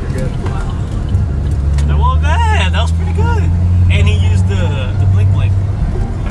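Car engine running with a loud, steady low drone, heard from inside the cabin while driving.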